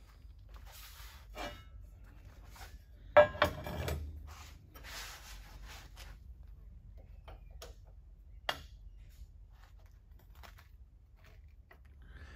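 Light clinks and knocks of metal being handled on a steel workbench over a low steady hum, the loudest a short clatter about three seconds in and a single sharp click later on.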